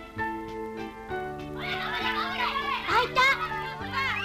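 Background music with held notes, joined about a second and a half in by several high children's voices calling out at play over it.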